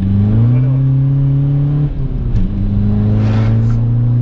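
Tuned VW Bora 1.9 TDI four-cylinder turbodiesel accelerating hard, heard from inside the cabin. The engine note climbs, drops about two seconds in at a gear change, then climbs again.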